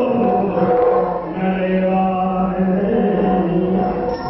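Yakshagana stage music: a long, steady sung note held over a sustained drone from the accompanying instruments.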